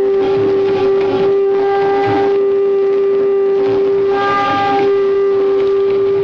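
Conch shell (shankha) blown in one long, loud note that holds steady in pitch.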